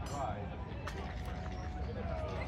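Several people talking casually outdoors, with a steady low rumble underneath.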